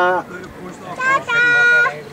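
A high-pitched human voice drawing out long, steady notes: one note trails off at the start and a second is held for over half a second about a second in.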